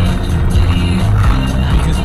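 Music playing on the car radio.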